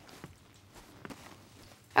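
Quiet pause with faint room tone and a couple of soft, faint taps, about a quarter second and a second in. A woman's voice starts at the very end.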